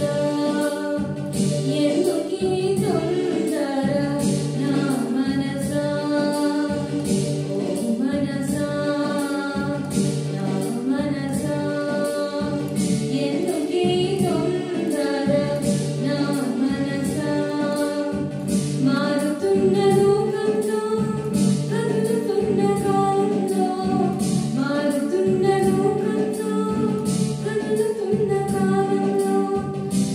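A girl sings a song into a handheld microphone, accompanied on an electronic keyboard that carries a steady beat.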